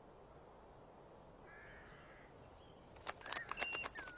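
Ravens: a faint call about one and a half seconds in, then from about three seconds a run of sharp clicks mixed with short, high calls.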